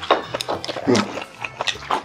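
Close-miked chewing and mouth smacking while eating: irregular short wet clicks, several in two seconds.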